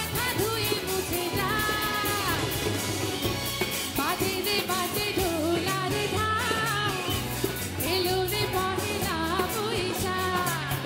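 A female singer performing a South Asian pop song live into a microphone, her melody gliding and ornamented, backed by a band with tabla and drums keeping a steady beat.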